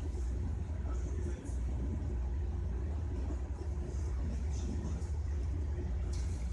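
Steady low rumble of a moving train heard from inside the passenger carriage.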